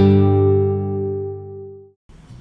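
Intro music: a final strummed guitar chord ringing out, dying away steadily and fading to nothing just before the end.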